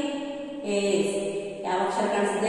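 A woman's voice chanting a Kannada syllable in a sing-song way, holding one long note for about a second.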